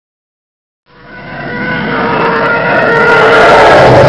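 A loud, engine-like intro sound effect: a whining, rumbling roar that swells in from silence about a second in and keeps getting louder, with several steady whining tones over it.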